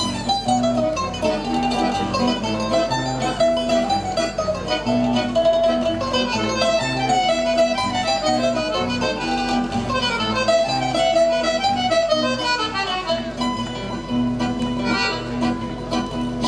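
Instrumental introduction of a folk song played live on accordion, nylon-string acoustic guitar and mandolin: plucked melody and chords over held accordion notes, before the vocals come in.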